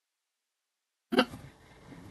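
Dead silence, then about a second in one short, sudden vocal sound from a person, hiccup-like, followed by faint room noise.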